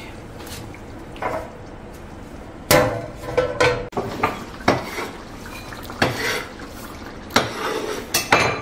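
Metal cookware and utensils clattering around a wok of curry on a gas hob: a loud clank a little under three seconds in, then a run of lighter clinks and knocks.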